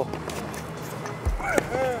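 Tennis balls struck with rackets in a rapid volley drill, a run of sharp knocks with shoes moving on a hard court and a dull thump a little after a second. A man's short shout comes just after the middle.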